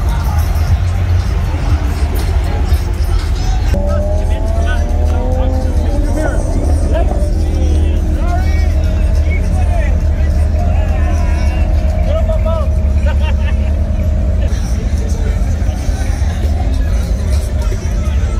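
Music with a heavy, steady bass playing over crowd chatter, with slow-rolling cars passing close by on the street.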